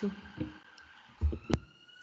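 A short spoken word, then quiet room tone broken by a soft low thump and, about a second and a half in, one sharp click.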